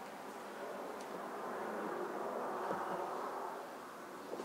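A steady buzzing hum that swells a little in the middle and eases off near the end.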